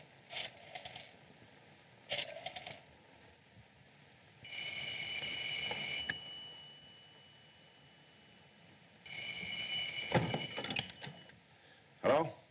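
Telephone handling clicks as a call is placed, then a telephone ringing twice, each ring a steady tone of about one and a half to two seconds. Clunks near the end as the receiver is lifted.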